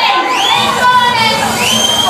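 Club crowd screaming and cheering into a microphone held out to them, with several high-pitched shrieks that rise in pitch over a mass of shouting voices.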